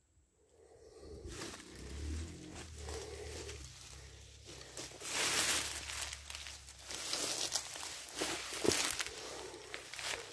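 Footsteps through dense ferns and undergrowth, with fronds and leaves rustling and brushing against the walker. It starts about a second in and grows louder, with the loudest rustling from about five seconds in.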